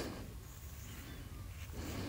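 Faint rustle of a hand rubbing and mixing dry flour dough in an aluminium bowl, over a low steady background hum.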